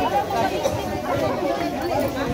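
Several people talking at once in a small crowd, an indistinct chatter of overlapping voices.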